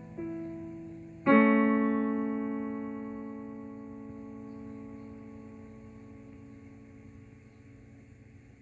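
Digital piano: a single note, then about a second in a loud chord is struck and held, ringing and fading slowly. It is the closing chord of the piece.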